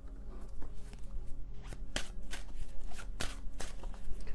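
A deck of tarot cards being shuffled by hand: a quick, irregular run of soft card clicks and slaps, over faint background music.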